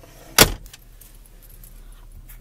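The plastic glove box lid of a 2012 Buick Enclave being shut once with a sharp clack, followed by a couple of faint clicks.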